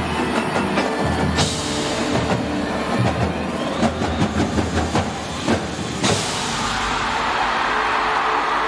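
Indoor percussion ensemble of marching snares, tenors, bass drums, cymbals and marimbas playing its closing bars, with sharp accented hits over sustained chords. It ends on one last loud hit about six seconds in, followed by a steady roar of arena crowd cheering.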